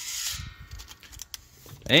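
A tape measure's blade scraping as it slides against the rim of an empty howitzer powder canister, a brief rasp over the first half second that fades into a few faint handling clicks.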